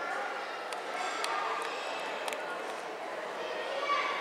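Indistinct background chatter of people's voices, with a few light clicks or knocks scattered through it.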